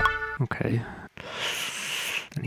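Electronic beat of kick drum and sustained synth pad, auditioned with the 'Cave Talkers' preset, cuts off about half a second in. A short breathy hiss follows near the end.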